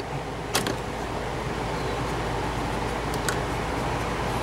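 Wire spade connectors being pulled off a contactor's low-voltage side terminals: two small clicks, about half a second in and about three seconds in, over a steady low mechanical hum.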